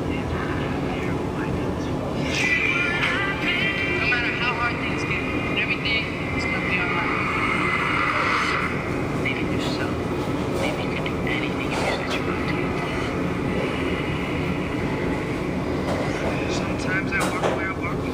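Steady low machinery rumble, with faint music and voices playing through an iPod's small built-in speaker, clearest in the first half.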